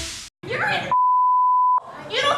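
A brief snatch of voices, then a single steady high-pitched censor bleep of just under a second that masks a spoken word.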